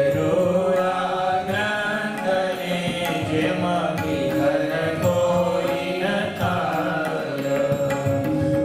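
Indian devotional music: a violin bowed Indian-style, with a two-headed barrel drum and tabla keeping time, over a steady drone note. Chant-like singing carries the melody.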